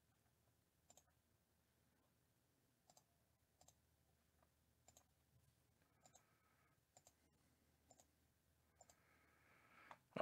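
Faint computer mouse clicks, roughly one a second, over near silence: the mouse button being pressed repeatedly to re-randomize a list.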